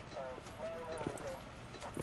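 Faint voices from a played video clip, with a couple of light knocks about a second in.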